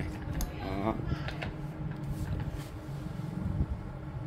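Faint clicks and light knocks of a spin mop's steel handle and plastic fittings being handled and fitted together over its spin bucket. A steady low background rumble runs underneath.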